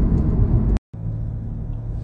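Low steady rumble of a car heard from inside the cabin. It breaks off in a short silent gap about a second in, then comes back a little quieter with a steady low hum.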